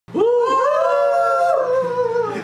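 Several men's voices joining in one long howling cheer, rising at the start and sliding down in pitch near the end.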